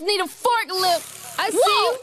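A rapper's vocal line alone in a hip-hop track, with the beat's bass dropped out for a short breakdown.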